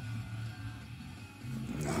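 Music playing quietly from a car radio inside the car, over a low steady hum.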